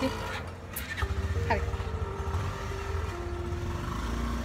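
Auto-rickshaw (tuk-tuk) engine running with a steady low road rumble, heard from inside the open passenger cabin while it drives along.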